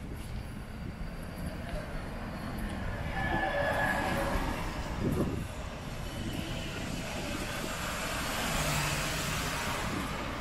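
Passing vehicle noise on a city street: a rush of sound swells about three seconds in and fades, then builds again near the end as a van passes close by.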